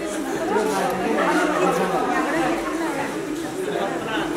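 Several people talking at once: overlapping, indistinct chatter from a small crowd.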